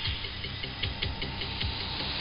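Shortwave AM radio reception of Radio Thailand's 9940 kHz signal: steady static hiss broken by irregular crackles, just before the station's program audio begins.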